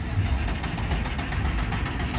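Volkswagen Derby car engine being started and running: a low rumble with a rapid, even ticking.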